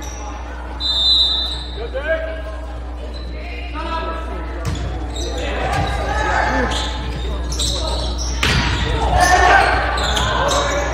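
Volleyball rally in a gymnasium: a brief shrill tone about a second in, then sharp ball hits at about five, six and eight and a half seconds, with players and spectators calling out, echoing in the hall.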